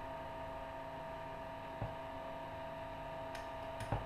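Steady electrical hum with a couple of fixed high tones from the Tesla coil's drive electronics, with a few faint clicks, one about two seconds in and a couple near the end, as the red control box's buttons are worked.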